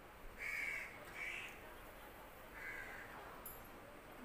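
A crow cawing faintly three times, the first two calls close together and the third more than a second later; the first is the loudest.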